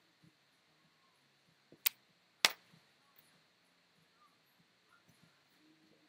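Two sharp clicks about half a second apart near the middle, over a faint, quiet room background with a few smaller ticks.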